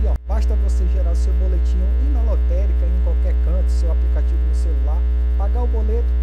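Loud, steady low electrical mains hum on the recording, with faint wavy voice-like sounds underneath. Everything drops out for a split second just after the start.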